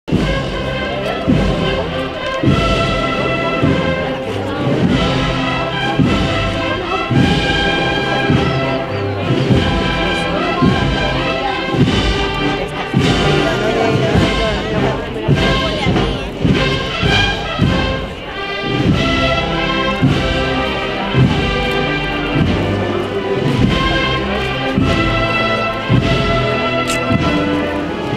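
Spanish procession band (banda de música) playing a march live, brass and woodwinds carrying sustained melody over a steady drum beat.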